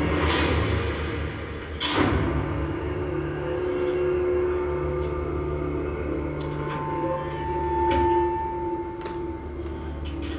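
Dramatic TV score music played from a television set in a room: sustained held tones with a sharp hit about two seconds in and a few lighter hits later.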